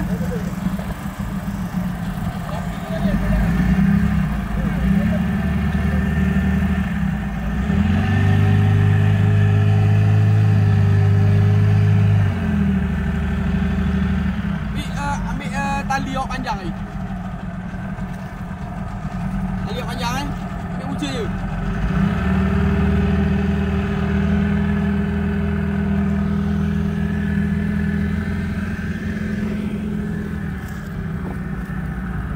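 Boat engine running steadily. It runs louder for a few seconds from about eight seconds in, drops back, and picks up again after about twenty seconds. Brief voices call out in between.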